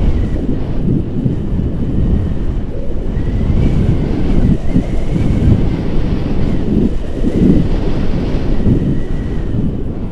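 Airflow of a paraglider in flight buffeting the camera's microphone: loud, gusty wind rumble.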